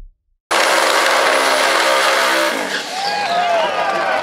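Red Camaro drag car's engine, starting abruptly about half a second in and held at steady high revs through a smoky burnout. About two and a half seconds in, the engine note drops and wavering higher tones join it.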